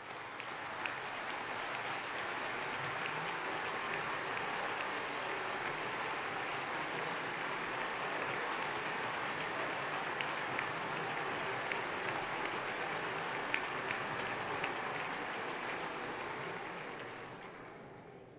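Sustained applause from the large assembly of parliamentarians. It swells right at the start, holds steady, and dies away over the last couple of seconds.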